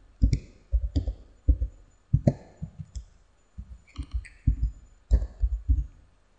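Computer keyboard being typed on: a dozen or so irregularly spaced keystroke clicks, each with a low thud beneath it, as number keys, Tab and Enter are pressed.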